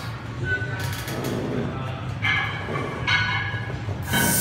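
A lifter's strained breathing and grunts while working under a heavy barbell in a split squat, loudest about two seconds in, over a steady low hum.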